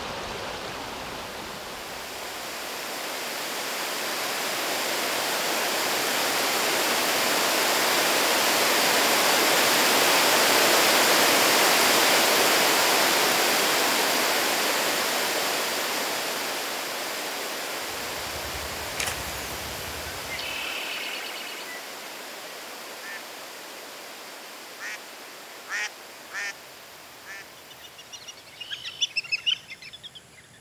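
Rushing river water swells to its loudest about ten seconds in, then fades away. After that come scattered short bird calls, and a quick run of whistling duck calls near the end, from black-bellied whistling ducks.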